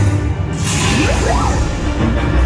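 Sci-fi dark-ride sound effects: a loud whoosh starting about half a second in, with a couple of short rising tones, over a dramatic orchestral score.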